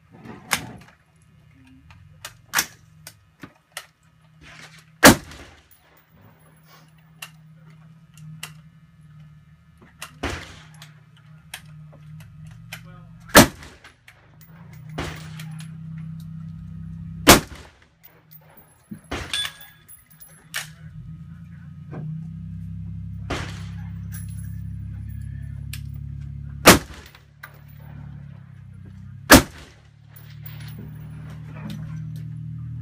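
Rifle shots fired one at a time, several seconds apart, about five of them loud and sharp, with fainter shots in between; a low steady hum sits underneath from about halfway through.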